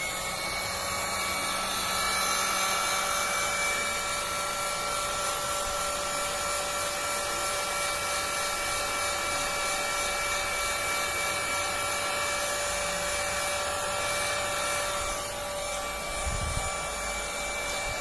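Electric hot air gun running steadily, an even rush of blown air with a steady motor whine, drying freshly screen-printed plastisol ink.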